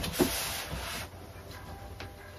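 A person's back and clothing brushing against a wall while sliding down into a wall sit: a soft rub lasting about a second, then quiet room tone.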